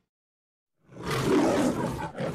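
A lion roars, the roar of the MGM studio-logo lion. It starts about a second in, after a moment of silence.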